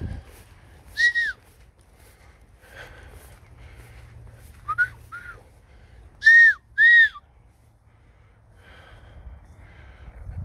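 A falconer whistling to call his Harris hawk: five short whistles, each rising then falling in pitch. One comes about a second in, two fainter ones near the middle, and the two loudest back to back a little later.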